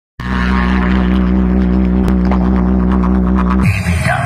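A DJ box sound system playing music, a loud, sustained deep bass drone with steady overtones, with thin ticks coming in over the second half. The drone cuts off suddenly near the end, giving way to a gliding, voice-like sound.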